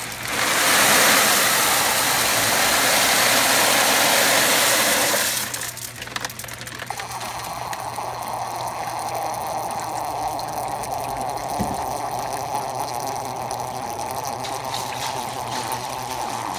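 Expanded clay pebbles (hydroton) pouring in a loud, rushing rattle into a water-filled grow bed for about five seconds, then stopping. After that a steady sound of running water remains.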